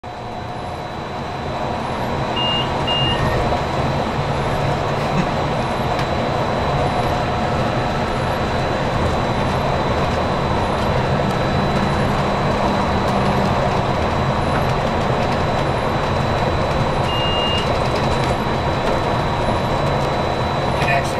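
Walt Disney World monorail running along its beam, heard inside the front cab: a steady rumble with a low motor hum and a thin high whine. Two short beeps come a couple of seconds in, and another near the end.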